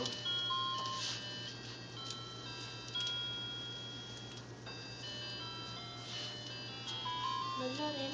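A simple electronic tune of clear, held beeping notes, one or two at a time, in the manner of a toy or novelty jingle, over a steady low hum.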